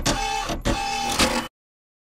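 Short musical jingle for a news logo card, with a few sharp struck notes; it cuts off abruptly about a second and a half in, into dead silence.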